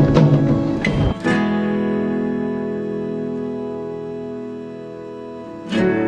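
Background music led by acoustic guitar: after a busy passage, a strummed chord rings out and slowly fades over several seconds, then a new chord is struck near the end.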